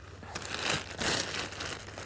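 Clear plastic bag crinkling and rustling in irregular bursts as it is handled, starting shortly after the beginning.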